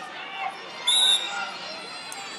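A referee's whistle gives one short, shrill blast about a second in, the signal to restart wrestling after a reset, over voices from spectators and coaches.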